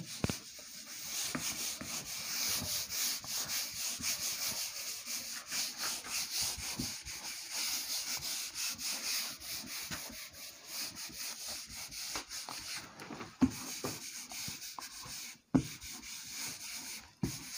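Handheld whiteboard eraser rubbing back and forth across a whiteboard, wiping off marker writing: a continuous scratchy swishing of quick strokes. A couple of short knocks near the end.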